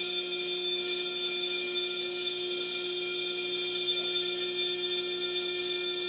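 Fire alarm sounding steadily: one unbroken tone with a stack of high overtones, not pulsing.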